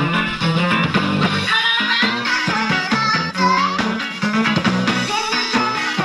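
A song with guitar and singing playing from a cassette on the Sanyo M7130K boombox's tape deck while its motor speed is being trimmed by ear at the motor's adjustment screw.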